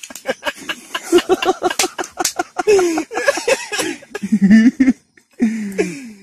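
Men laughing hard in short, broken bursts, with breathy catches and clicky sounds through the first couple of seconds.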